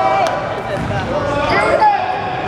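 Basketball bouncing on a hardwood gym floor, with voices of players and spectators around it.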